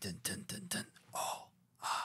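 A man's short breathy gasps and exhalations, two quick bursts of breath after a few clipped vocal sounds.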